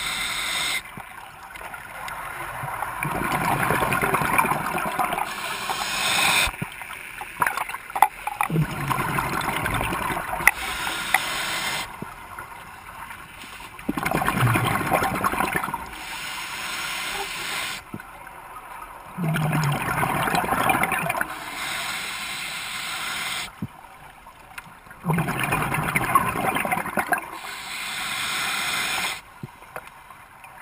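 Scuba diver breathing through a regulator underwater: a short hiss of inhalation, then a long gurgling rush of exhaled bubbles, repeating about every five to six seconds, about five breaths in all.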